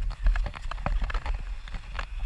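Skis running over snow, with a low wind rumble on the camera's microphone and a run of irregular sharp clicks and knocks from the skis, poles and gear.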